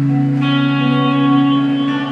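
Acoustic guitar played solo: a low note rings on while a new, brighter chord is struck about half a second in and another note shortly before the end.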